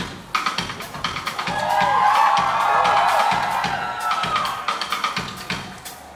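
A live band starting a song's intro: a drum kit plays a steady beat with bass drum and snare. Gliding, wavering tones sweep over it through the middle.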